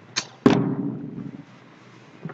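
A short sharp knock, then a much louder thump about half a second in that dies away over roughly a second.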